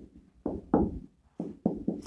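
Marker pen writing on a wall-mounted whiteboard: a quick run of about six short knocks and taps as the strokes hit the board.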